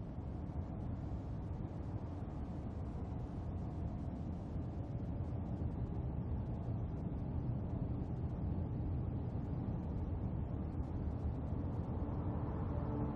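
Steady low rumble of vehicle road noise, fading in at the start.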